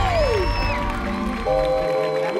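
Music with sustained chords. A sliding tone falls in pitch in the first half second, and a new chord comes in about one and a half seconds in.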